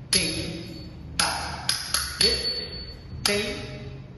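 Nattuvangam cymbals (thalam) struck to keep the beat of a Bharatanatyam adavu, each stroke ringing and dying away. Six strokes, three of them coming quickly together about two seconds in.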